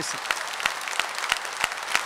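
Audience applauding after a speech: dense, steady clapping from a large seated crowd.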